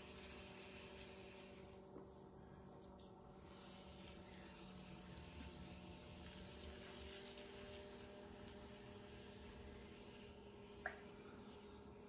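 Near silence: the faint steady hum of an electric potter's wheel spinning, with faint wet swishing of hands on clay being centred. There is one small click near the end.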